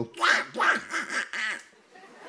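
A man imitating a Disney cartoon duck's voice: about four short, raspy quacking phrases in a row, the duck voice he dubbed Disney cartoons with.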